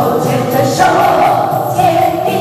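A roomful of people singing a song together in unison, clapping along by hand.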